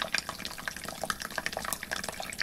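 Playback of a recorded water sample: water trickling, with many small irregular drips at varied pitches.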